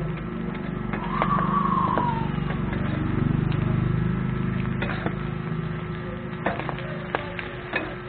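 Metal spatulas clacking and scraping on a flat steel griddle as pork sisig and raw eggs are chopped and mixed, in sharp strikes that come more often in the last few seconds. They sound over a low steady rumble, with a brief rising-and-falling whine about a second in.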